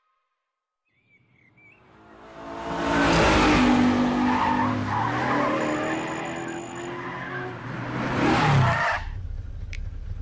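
Sports car engines revving with tyres squealing, building from about a second and a half in, with one car swelling past near the end before the sound cuts off.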